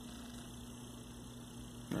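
Steady low hum with faint hiss: room tone, with no distinct handling sounds.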